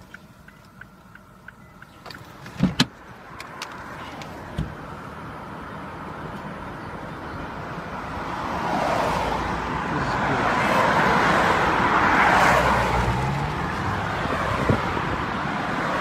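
Street traffic noise heard from a parked car: a sharp knock about three seconds in, then a steady road rush that builds as a vehicle goes by, loudest a little past the middle, and eases slightly near the end.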